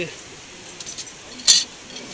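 Metal cuff bracelets clinking against one another on a glass display as one is picked up: a few light taps, then one sharp clink about a second and a half in.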